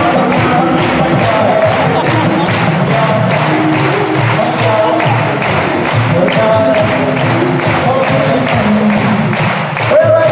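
Male a cappella group singing live through microphones, the voices in harmony over a steady beat from vocal percussion.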